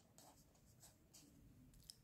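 Faint scratching of a pen writing on paper, a few short strokes.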